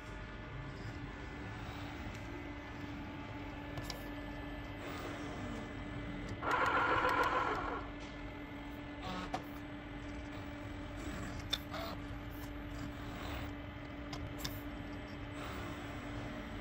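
Single-arm ABB YuMi collaborative robot running a pick-and-place cycle: a steady low hum from its drives, with occasional faint clicks. A louder noisy burst lasts about a second and a half, some six seconds in.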